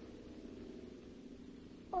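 A faint, steady hum with light hiss on an old film soundtrack, with no sudden sounds.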